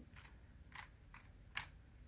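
Rubik's cube layers being turned by hand: four faint, quick plastic clicks spread across two seconds.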